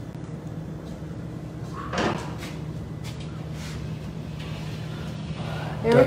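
Metal sheet pan slid onto an oven rack, with one louder scrape and clatter about two seconds in and a few faint clinks after it, over a steady low hum.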